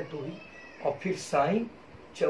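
A man's voice speaking a few short words in Hindi, with pauses between them.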